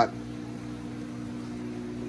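Steady hum of running aquarium equipment, the circulation and return pumps, over a soft hiss of bubbling water.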